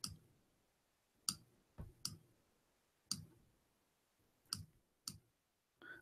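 Faint, irregular clicks at a computer, about half a dozen over a few seconds with near silence between them, as a video player is scrubbed back and forth.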